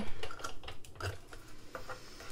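Sizzix Big Shot die-cutting machine being cranked by hand, the cutting plates and heart die rolling through the rollers with a few light clicks and knocks.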